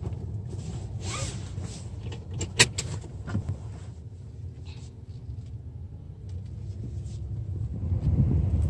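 A 2018 Mazda 6 idling, a steady low rumble heard inside its cabin, with a few sharp clicks and knocks, the loudest about two and a half seconds in.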